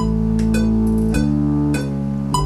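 Keyboard synthesizer playing sustained bass notes that change pitch about three times, over a steady ticking beat of roughly one tick every 0.6 seconds.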